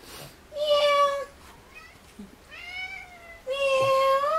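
A domestic cat meowing three times: a level meow about half a second in, a shorter arching one near three seconds, and a longer one rising slightly in pitch near the end.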